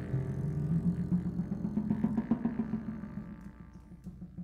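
Jazz double bass playing quick repeated low notes that fade away gradually.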